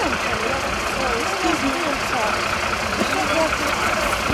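Steady idling of stopped vehicle engines, with indistinct voices over it.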